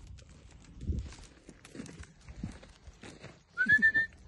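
Quiet footsteps on dry, clodded earth, then near the end a person's short rising whistle.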